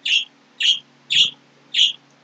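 A small bird chirping repeatedly, four short high chirps about half a second apart, over a faint low steady hum.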